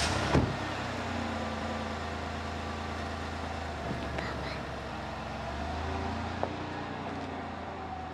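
An SUV's engine running with a steady low hum, after a short thump right at the start; the hum swells briefly around six seconds in.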